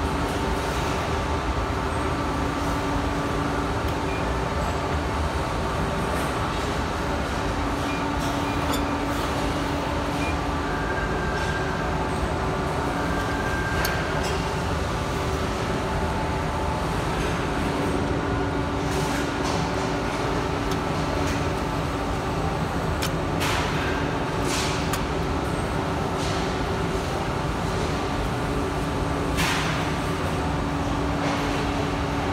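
Steady machine hum of an Amada HG1003 ATC press brake running between bends while a part is set against the back gauge. A few brief sharp sounds come in the second half.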